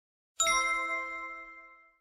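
Notification-bell chime sound effect of a subscribe-button animation. It is struck once about half a second in, and several bell tones ring together and fade out over about a second and a half.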